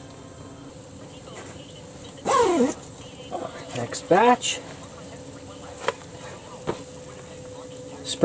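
Two short vocal sounds with falling pitch, about two seconds in and again about four seconds in, over a steady faint hum. A few light clicks are scattered between them.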